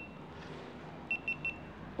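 An electronic beeper sounds three quick, high-pitched beeps a little after a second in, over quiet background noise.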